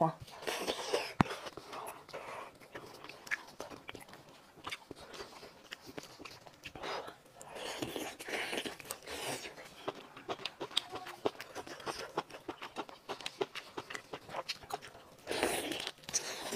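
Close-miked eating of cooked lobster: repeated biting and chewing with wet mouth smacks and many small clicks, and a louder burst near the end.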